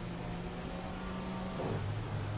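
Steady low hum over an even hiss, with no distinct event.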